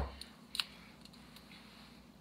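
A few light clicks of metal kitchen tongs and forks being handled: a sharper clack right at the start, then a few faint ticks spread through the rest.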